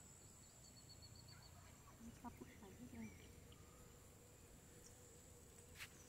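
Near silence: faint outdoor ambience with a few faint, distant calls about two to three seconds in.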